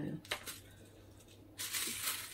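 A single short snip of scissors through the thin plastic of a tied freezer bag. About one and a half seconds in, a hissy crinkle of the plastic bag being handled starts.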